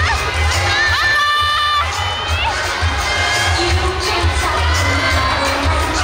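Many high-pitched voices cheering and shouting over dance music with a steady bass beat; the beat drops out briefly about a second in.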